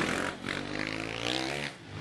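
Freestyle motocross dirt bike engine revving hard for about a second on the run-up and take-off from the ramp, then cutting off sharply near the end as the rider leaves the ramp.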